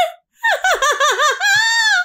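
A woman laughing hard in about six rapid high-pitched bursts, starting about half a second in and ending in one long squealing note.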